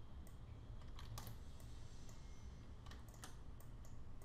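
A handful of separate, sharp clicks from a computer keyboard and mouse as the software is worked, over a low steady background hum.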